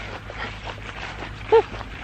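One short, sharp yelp about one and a half seconds in, over faint rustling and handling noise and a steady low hum.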